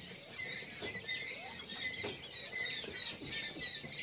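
A brood of quail chicks peeping: many short, high chirps, several a second, overlapping.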